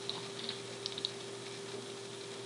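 A few faint, light clicks in the first second over a steady hum and hiss.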